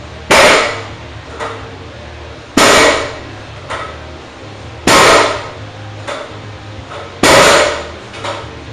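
Loaded barbell with iron plates set down hard on a plywood lifting platform four times, about every two and a half seconds, each a loud clank that rings briefly. These are the floor touches of Pendlay rows, where the bar returns to a dead stop on every rep. A fainter knock falls between each pair of clanks.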